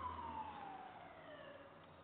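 A faint distant siren, one long tone sliding slowly down in pitch and fading out. A low hum beneath it dies away early on.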